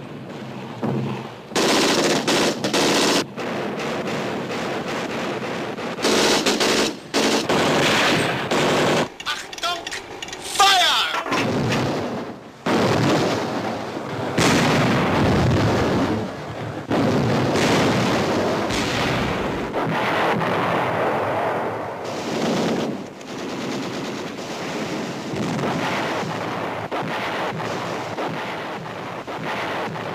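Battle soundtrack: machine-gun fire in repeated bursts of a second or two, mixed with rifle shots and the explosions of an artillery barrage. A falling whistle cuts through about ten seconds in.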